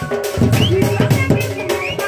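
Dhol, a large barrel drum, beaten with a stick in a quick, steady rhythm of about four or five strokes a second, with a pitched melody playing over it as folk dance music.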